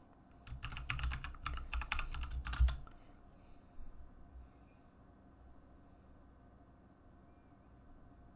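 Quick typing on a computer keyboard for about two seconds as a login password is entered, the last keystroke the loudest; a couple of faint clicks follow, then quiet room noise.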